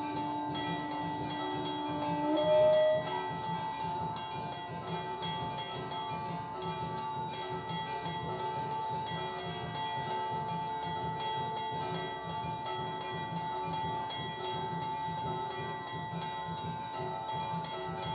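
A hanging brass temple bell rung continuously during aarti, a steady ringing clang. About two to three seconds in, a held low note jumps up in pitch and stops, the loudest moment.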